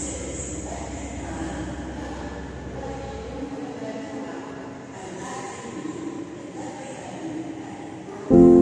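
Railway station ambience with a train's low rumble that stops about three and a half seconds in, over a steady noisy haze with a few faint tones.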